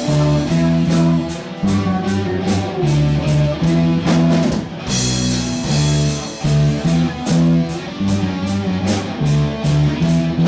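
Small rock band playing live: plucked electric guitar and a bass line over a drum kit with regular cymbal hits, no vocals.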